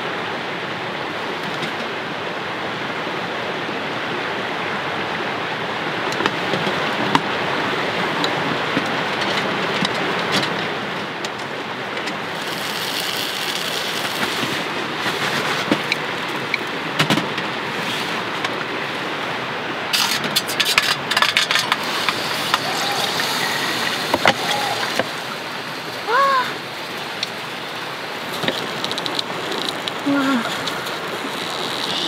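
Steady sizzling hiss of a sandwich toasting in a pie iron on a wood-burning stove. From about two-thirds of the way in, a run of sharp crackles and clicks joins it.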